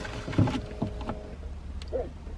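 Rustling and a few light knocks as someone rummages around a car seat for a coin, over a low steady rumble. A faint steady hum stops a little past the middle.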